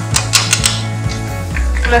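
Background music with a steady bass line that moves to a lower note about one and a half seconds in. Over it, a quick run of clicks in the first half: a wooden spoon tapping and scraping a nonstick frying pan as diced onion is stirred.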